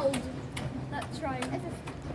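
Passenger carriages rolling slowly past, with a few sharp clicks of the wheels over rail joints and a low rumble, under nearby voices.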